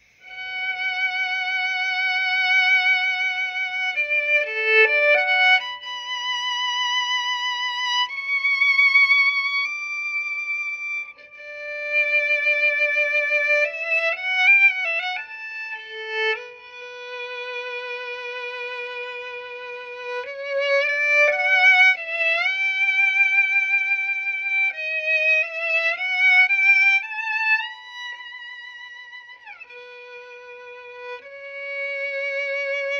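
Solo violin playing a slow melody of long held notes with a steady, even vibrato, and pitch slides between some notes. The vibrato is a 'vertical' vibrato technique that the player is still working on.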